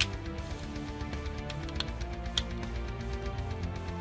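Heavy-metal background music with guitar, playing low under a few faint plastic clicks from a toy figure's parts being handled and fitted.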